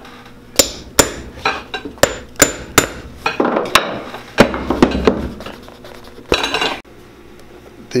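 Sharp clicks from a pegging awl driven into a new leather shoe sole to make peg holes, about three a second, some with a short metallic ring. After that comes rougher scraping and handling of the sole.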